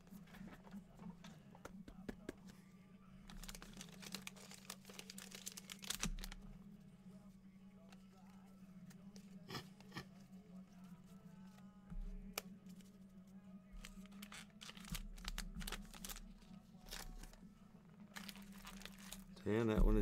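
Trading-card pack wrappers and plastic card holders being handled at a table: intermittent crinkling, tearing and clicking rustles over a low steady hum.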